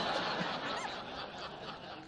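Audience laughing, the laughter slowly dying away.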